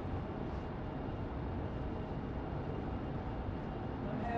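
Steady low hum and hiss of background room noise, with no distinct event and no speech.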